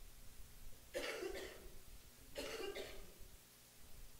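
Two faint coughs, about a second and a half apart, over a low steady room hum.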